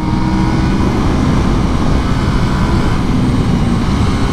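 KTM 890 Duke R's parallel-twin engine running steadily at about 135 to 140 km/h, mixed with heavy wind rush on a helmet-mounted microphone.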